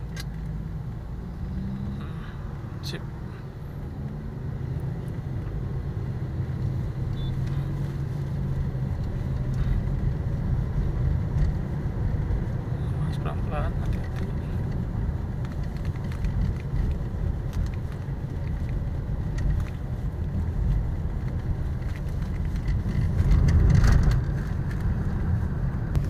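Car engine and road rumble heard from inside the cabin while driving, a steady low hum that slowly grows louder as the car picks up speed, swelling most a couple of seconds before the end.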